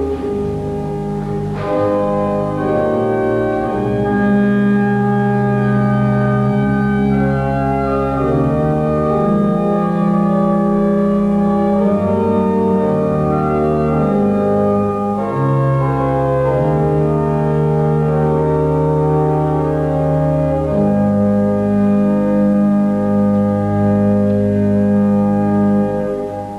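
Romsey Abbey's pipe organ playing slow, sustained chords over a low bass line, the chords changing every second or two.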